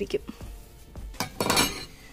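Metal cooking pots and utensils knocking and scraping: a few small clinks, then a short clatter about one and a half seconds in.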